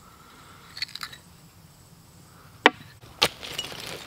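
Hand digging tools working into soil: a few faint clicks, then two sharp knocks about two and a half and three seconds in, followed by scraping and crumbling of dirt.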